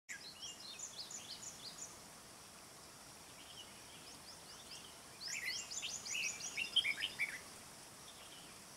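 Red-whiskered bulbul singing: quick, bright whistled phrases in two bursts, one at the start and a louder, busier one from about five seconds in, with softer notes between.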